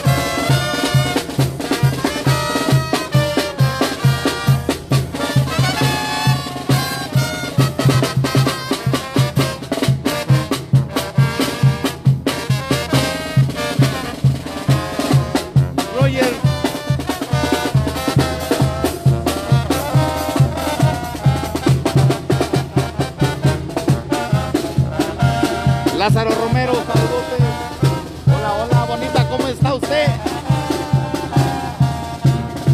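Zacatecas-style tamborazo band playing live: brass melody over a steady, regular beat of the tambora bass drum.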